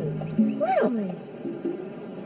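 A woman's voice makes a drawn-out, wordless, exaggerated vocal sound that slides up in pitch and back down, over soft background music.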